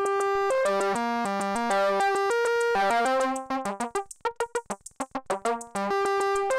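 Electronic background music: synthesizer notes stepping through a sequence over light ticking percussion, switching to short, separated notes about halfway through before held notes return. The rhythm, hi-hats and leads are driven by a Stoicheia Euclidean sequencer.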